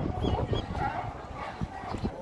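California sea lions barking from their haul-out floats, mixed with the chatter of a crowd.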